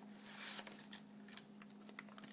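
Plastic-wrapped knife package pulled out of a cardboard mailing box: a brief soft rustle of plastic and cardboard, then light crinkles and small ticks. A faint steady hum runs underneath.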